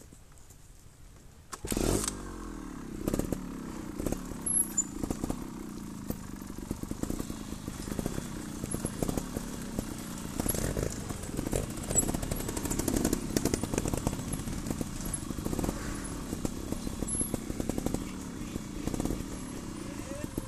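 Trials motorcycle engine coming in abruptly about two seconds in, then running and revving up and down with sharp throttle blips while the bike is ridden over rough ground.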